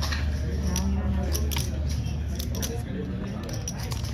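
Playing cards being flipped, tossed and squeezed on a felt table, making small scattered clicks and rustles over a steady low room hum and faint background voices.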